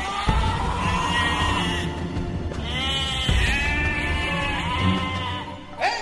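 Sheep bleating several times, long wavering calls, over dramatic background music: a radio-drama sound effect of an animal crying out, passed off in the story as an escaped sheep.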